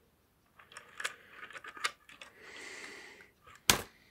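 Plastic toy train engines clicking and clattering against each other and the track as they are pushed by hand, with a short sliding scrape in the middle and a sharp knock near the end as one engine is shoved over.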